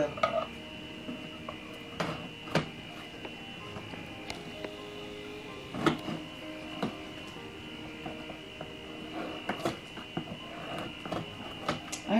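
A cardboard box being handled, giving a few light knocks and rustles about two seconds in, again around six and seven seconds, and near ten seconds. Quiet background music plays underneath.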